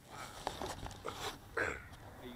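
Handling noise on the landed foam glider as it is picked up off the grass: a run of irregular rustles, scrapes and knocks carried through the airframe to the camera mounted on it, the loudest about one and a half seconds in.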